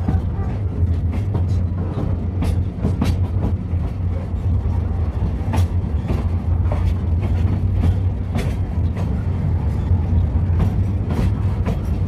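Ikawa Line train descending the steep Abt rack section, heard from inside the passenger car: a steady low rumble with irregular clicks and knocks from the wheels and running gear.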